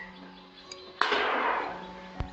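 A latex balloon bursting about a second in, popped by the heat of a focused green laser pointer beam: one loud, sharp bang that dies away over about half a second. Soft background music with held notes runs underneath.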